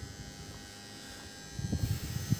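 Quiet street background with a faint steady hum; about one and a half seconds in, low irregular rumbling bumps start on the handheld microphone.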